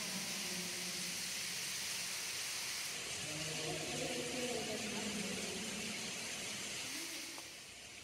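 Steady hiss with faint, distant voices of people talking underneath it. The voices fade out shortly before the end.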